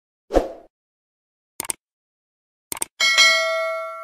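Subscribe-button sound effects: a short soft thump, two quick double clicks, then a bright bell ding about three seconds in that rings and fades over about a second and a half, the notification-bell chime.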